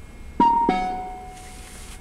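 A two-note electronic chime from the Nissan Leaf's dashboard, a higher note then a lower one that rings out and fades: the automatic parking assist's prompt telling the driver to brake and shift into reverse.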